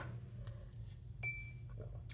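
A single light clink about a second in, followed by a brief thin ring, as the pen touches the glass dish of water. A faint low hum lies underneath.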